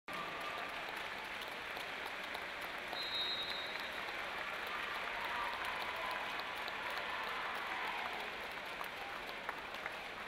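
Indoor sports-arena crowd applauding, a steady wash of clapping at an even level.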